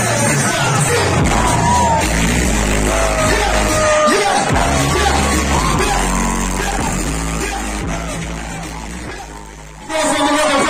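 Live Hindi rap performance heard from the crowd: a rapper on a microphone over a beat with heavy bass, with the crowd yelling along. The sound fades down over the last few seconds.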